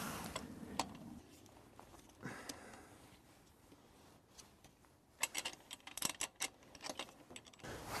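Faint small metallic clicks and taps of a crank puller tool being handled and threaded into a bicycle crank arm, with a quick run of clicks in the second half.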